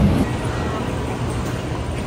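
Low airliner cabin rumble that cuts off a moment in, giving way to the quieter, steady hum and hiss of an airport terminal hall.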